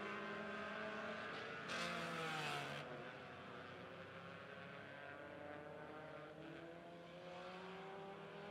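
Several dirt-track race car engines running together around the oval, their pitches rising and falling through the turns. A brief louder rush comes about two seconds in.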